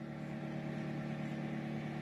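Minced garlic frying gently in melted butter in a stainless steel skillet, a faint steady sizzle over a constant low hum.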